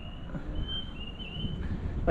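Open-air ambience: a low rumble of wind on the microphone, with several short, high, thin bird calls.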